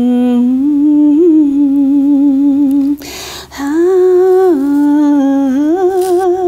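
A woman humming a slow lullaby in long, held notes. She takes a breath about three seconds in, then goes on at a higher pitch that steps down and back up.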